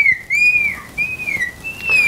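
Felt-tip marker squeaking on a glass lightboard as the sides of a square are drawn: four short, high squeaks, each a brief pitched glide, one per stroke.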